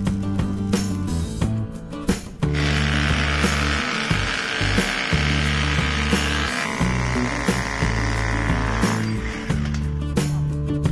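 Electric hammer drill boring into concrete, starting about a quarter of the way in and running until near the end, its sound changing about two-thirds through, over background music with a steady bass line.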